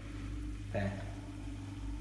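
Slimline built-in dishwasher starting its wash cycle: a steady low hum from the running machine.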